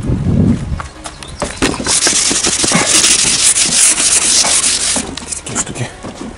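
A rough rubbing, scraping noise with many small knocks, loudest for about three seconds in the middle.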